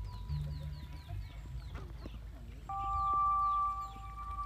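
Ducks calling with short, high peeps that fall in pitch: a quick run of several a second, then scattered ones. Background music with sustained tones comes in louder about two-thirds of the way through.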